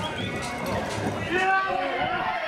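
Hoofbeats of a reining horse galloping on arena dirt, with a person's voice calling out loudly about one and a half seconds in.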